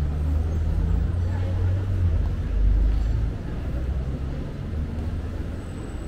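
A road vehicle's low engine rumble in street traffic, swelling as it passes and loudest about halfway through, then easing off.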